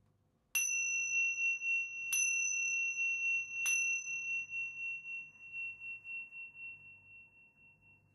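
A pair of Tibetan tingsha cymbals struck together three times, about a second and a half apart, each strike giving a bright, high, clear ring. After the last strike the ring lingers for several seconds, wavering as it fades out near the end.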